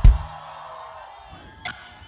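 A live band's drums and bass land a short run of low hits right at the start, then a held note rings out and fades over about a second.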